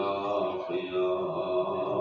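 A man's voice chanting a melodic religious recitation in long, held notes.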